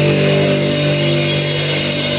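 Electric guitars through distorted amps holding one loud chord, a steady droning ring with no drum hits.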